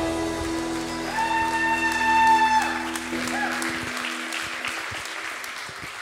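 A worship band's closing chord ringing out with a last long held note, dying away over a few seconds. The congregation applauds over it, loudest about two seconds in and thinning out toward the end.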